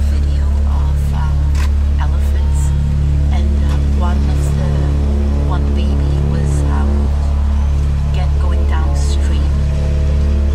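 Ambient electronic music from a modular synthesizer: a steady deep bass drone under a slow sequence of held synth notes, with fragments of layered voice recordings woven in and occasional light high clicks.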